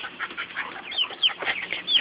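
Chickens calling: a quick stream of short, high clucks and chirps, several a second.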